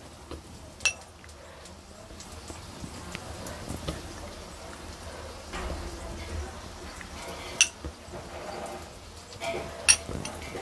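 A few sharp metal clinks of a spoon against an aluminium kadai, spread out across a quiet stretch with a faint low hum underneath.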